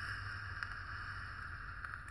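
A long drag on an Innokin Cool Fire 4 box mod with an iSub Apex tank: a steady hiss of air drawn through the tank over the firing coil, with a few faint crackles.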